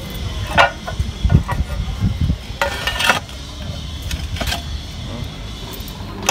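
Tile pieces being handled and set upright, with a few short knocks and scrapes over a steady low rumble.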